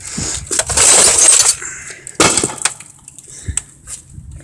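Old tube (CRT) television being smashed, its glass and parts breaking. A long crash of breaking glass fills the first second and a half, a second sharp smash comes a little after two seconds, and lighter clinks fall between.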